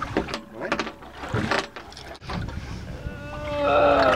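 Irregular clicks and knocks from a heavy fishing rod and reel being worked against a big fish, over a low rumble. Near the end comes a man's long, strained wordless voice that falls in pitch.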